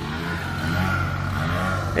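An engine running steadily at an even speed, a low steady hum.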